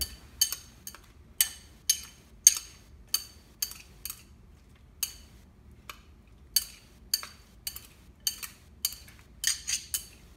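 A utensil clinking against a bowl as cucumber salad is tossed and mixed: sharp, ringing clinks at about two a second, easing off for a second or two near the middle.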